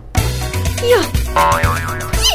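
Cartoon background music with comic sound effects: a short falling pitch glide a little under a second in, then a wobbling up-and-down tone.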